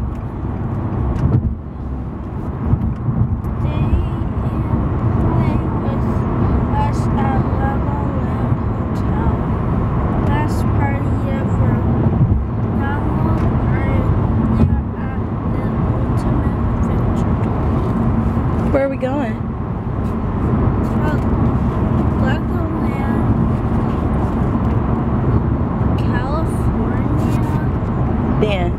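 Steady low rumble of a moving car heard from inside the cabin, with indistinct talking over it and occasional rustling of paper sheets.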